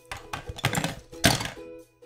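Hard plastic knocks and clatter as a 3D-printed plastic toy car and its parts are set down in a clear plastic storage box, with one louder knock a little past halfway, over background music.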